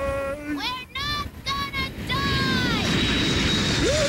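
Cartoon characters screaming in long, wavering yells, then from about two and a half seconds in the steady rush of a jet airliner flying past, with a high whine slowly falling in pitch.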